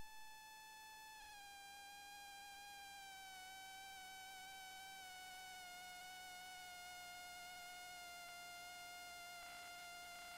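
Near silence, with a faint, thin electronic tone that slowly drops in pitch.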